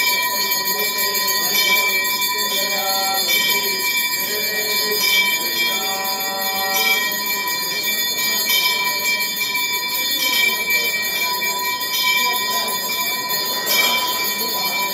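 Temple bells ringing continuously and rapidly during an aarti, the camphor-lamp waving of Hindu worship.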